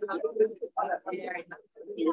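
Indistinct speech from a room recording.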